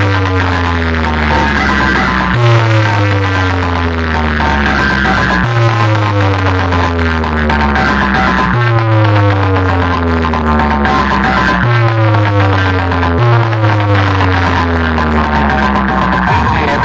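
Electronic DJ competition music played loud through a large DJ box speaker stack being tested. A deep bass note slides downward and restarts about every three seconds.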